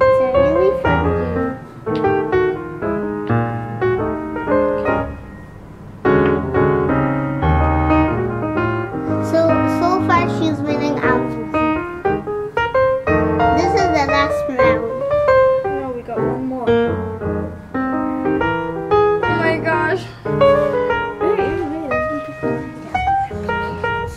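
Background piano music playing throughout, with children's voices briefly heard over it.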